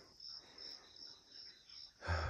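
Faint crickets chirping in the background: a steady high-pitched pulsing, about four chirps a second.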